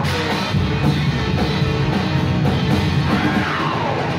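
A rock band playing live and loud: a drum kit with band and vocals over it.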